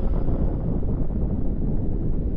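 Deep, steady rumble from a space documentary's sound design, accompanying footage of a solar eruption, with no narration over it.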